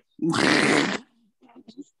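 A single loud, raspy burst of sound just under a second long, followed by faint, broken voice fragments.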